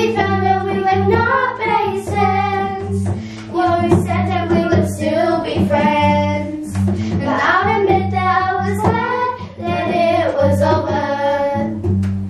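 A group of children singing a song together in unison, accompanied by a strummed acoustic guitar.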